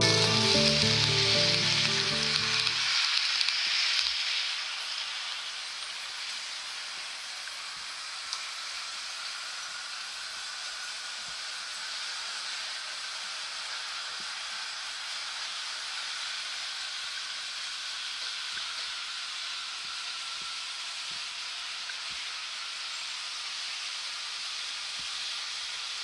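Acoustic guitar music fades out over the first few seconds. After that comes the steady hissing run of a model train, a diesel locomotive hauling flatcars, with a faint thin whine throughout.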